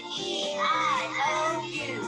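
Children's song about the vowels: a child's voice sings the letters "A, E" over upbeat backing music.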